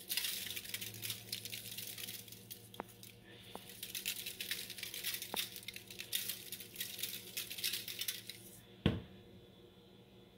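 Lemon pepper being shaken from a plastic shaker jar onto asparagus spears on aluminium foil: a rapid, continuous patter of shakes that stops near the end. A single knock follows.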